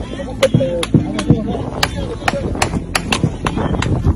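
Gunfire in a firefight: about nine sharp shots over four seconds, unevenly spaced, with voices underneath.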